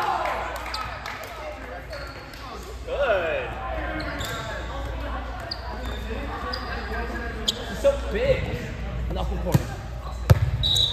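Volleyball players calling out to each other in a large, echoing gym between rallies, with short sneaker squeaks on the court and a volleyball bouncing sharply on the floor a few times near the end.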